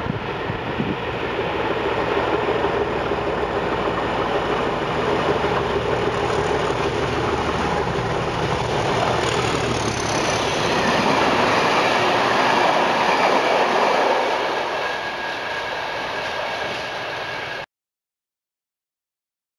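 Locomotive-hauled train passing through the station at speed, with rumbling wheel and rail noise. The noise grows louder to a peak about two-thirds of the way through, eases off, then cuts off suddenly near the end.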